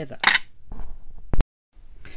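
A short rustling burst, then a single sharp click about halfway through, followed by a brief gap of dead silence where the recording is cut.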